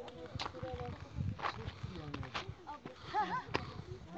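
Indistinct voices of several people talking in the background, with scattered sharp clicks and scuffs of footsteps on loose stone and rock.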